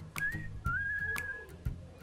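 A high, thin whistling tone: a short note, then a steadier one held for nearly a second. A few faint clicks of a metal spoon against a ceramic bowl as a thick milk mixture is stirred.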